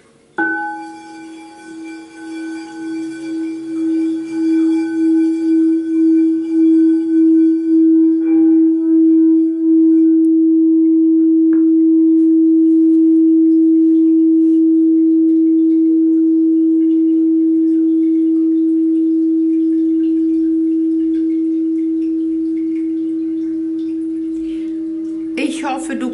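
Frosted crystal singing bowl struck once with a mallet, then rubbed around its rim, so its single deep tone swells with a wavering pulse. After about ten seconds it rings on steadily and slowly fades.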